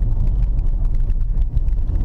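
Cabin noise inside a BMW 325ti Compact driving on a snow-covered frozen-lake circuit: a steady low rumble of the engine and the tyres on the ice, with a fast crackle of small ticks over it.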